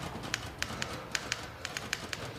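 Manual typewriter keys struck in a quick, uneven run: about a dozen sharp clacks in two seconds.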